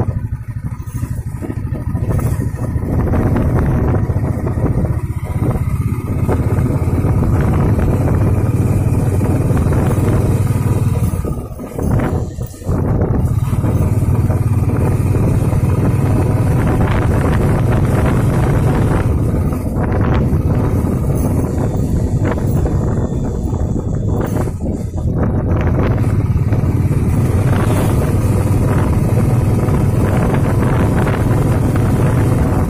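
A vehicle driving along a rough mountain road: steady engine and road noise, with a brief dip about twelve seconds in.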